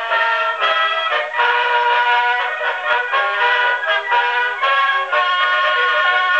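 A 1905 Edison two-minute black wax cylinder of a military band playing a brass-led medley, reproduced acoustically on an Edison Model B Triumph phonograph through its brass horn. The sound is thin and boxy, with no bass.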